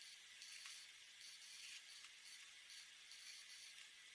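Faint scratching of a felt-tip alcohol marker's tip drawing across paper, a soft high hiss that comes and goes with the strokes.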